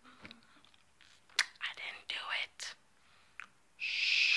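A woman whispering a few breathy words, then a long "shh" shush starting near the end.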